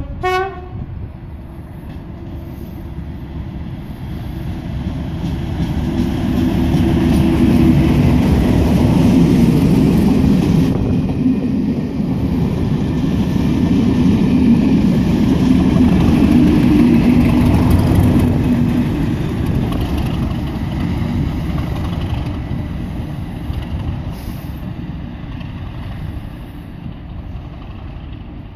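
Two-note horn of an English Electric Class 37 diesel locomotive sounding briefly at the start. Then a pair of Class 37s, with V12 diesel engines, passes top-and-tail with a rake of coaches. The engine sound builds, is loudest twice as the leading and then the rear locomotive go by, and fades away.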